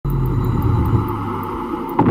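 Deep, steady rumble of a cinematic intro sound effect under an animated logo, with faint ticks high above it.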